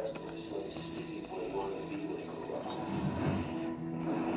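A television playing music and speech at low level.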